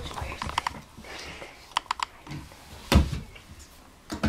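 Small clicks and taps from hands pulling Pokémon cards out of an advent calendar pocket, with one louder knock about three seconds in.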